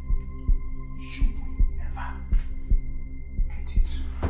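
Suspense film score: a low heartbeat-like thump about twice a second over a steady sustained drone.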